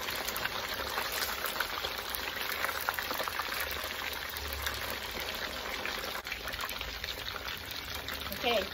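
Whole fish deep-frying in hot oil in a steel wok, the oil bubbling and crackling steadily.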